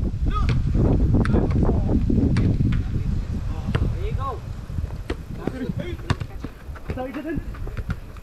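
Indistinct shouts and calls from players across a five-a-side soccer pitch, with several sharp thuds of the ball being kicked. A heavy low rumble fills the first three seconds, then fades.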